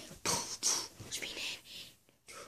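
A boy's breathy, whispered vocal sounds: a few short hissing bursts of breath and voice.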